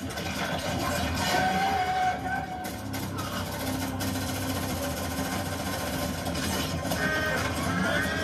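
Action-film soundtrack playing from a television: steady music under sound effects, with a few sharp hits about three to four seconds in.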